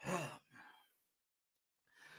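A man's audible sigh: a short, breathy exhale with a little voice in it, his hand over his face, then a softer second breath. A faint breath in comes near the end.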